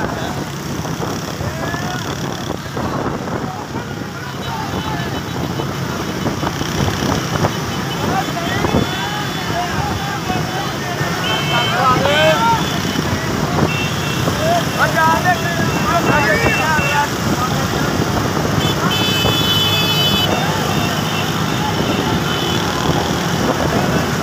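Motorbike engines and road noise on the move, with men shouting over them and a few short horn toots near the middle and near the end.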